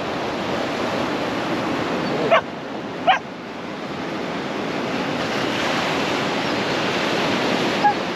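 Sea surf breaking and washing over a rocky shore, a steady rush that swells louder in the second half. Two short, sharp high-pitched sounds cut through it about two and three seconds in.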